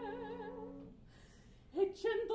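Mezzo-soprano singing a held operatic note with wide vibrato over a sustained grand-piano chord. The note fades away about a second in, and after a short hush a piano attack and the voice come in again just before the end.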